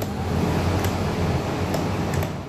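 Coleman Mach rooftop RV air conditioner running on high cool on generator power: a steady fan rush over a low hum. The unit is struggling, with the compressor not delivering cold air on a single generator.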